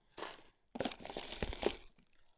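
Wrapped sweets crinkling and clicking as they are scooped out of bowls with spoons: an uneven run of small rustles and ticks with short gaps.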